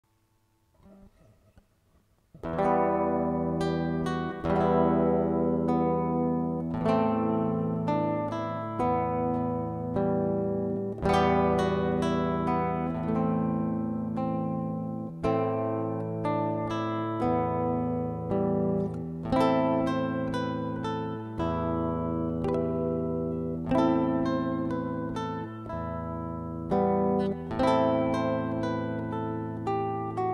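Nylon-string silent guitar with a skeleton-frame body played fingerstyle: a slow classical piece of plucked melody notes over ringing bass notes, starting about two seconds in.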